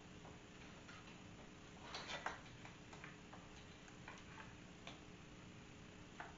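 Faint, scattered clicks and light knocks as a wood block and a bar clamp are handled on a table saw top, with a slightly louder pair of clicks about two seconds in.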